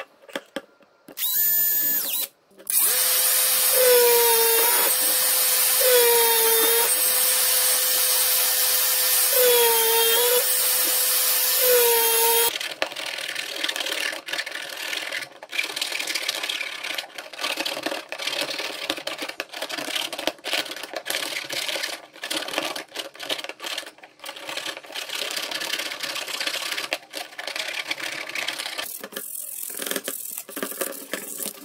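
Power drill with a step bit cutting into PVC pipe: two short runs, then about ten seconds of steady running whose pitch dips four times as the bit bites into the plastic. For the rest of the time a hand tool scrapes irregularly at the cut edges of the plastic slots.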